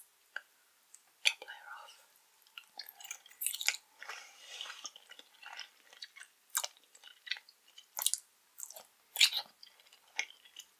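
Close-up sounds of someone chewing soft gummy jelly: wet mouth clicks and smacks at irregular intervals.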